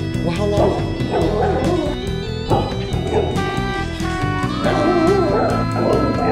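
Dogs barking and yipping over background music.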